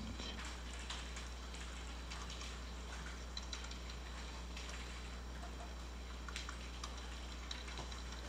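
Faint, scattered computer keyboard clicks over a steady low hum.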